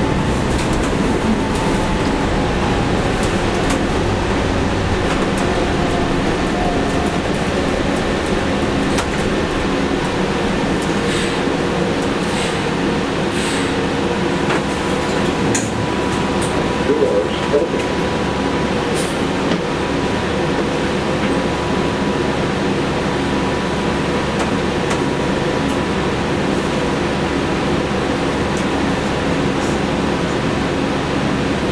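Interior sound of a 2017 New Flyer XN40 Xcelsior CNG bus with a Cummins ISL-G engine. The drivetrain hum falls in pitch over the first several seconds as the bus slows, then settles to a steadier, lighter hum with a faint steady whine, and a few rattles and clicks come around the middle.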